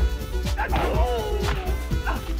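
Video-game-style fight soundtrack: music with a steady deep bass under repeated sharp hit sounds, and a high yelping cry that falls in pitch in the middle.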